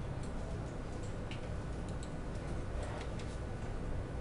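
A few faint, irregularly spaced clicks at a computer, over a steady low background hum.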